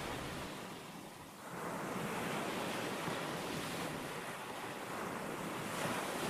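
Ocean surf rushing steadily, easing about a second in and swelling again soon after.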